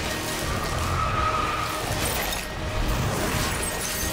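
Film score music mixed with sound effects of ice cracking and shattering.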